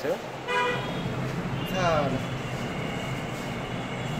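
A short vehicle horn toot about half a second in, over a steady low rumble; a falling pitched sound follows near the middle.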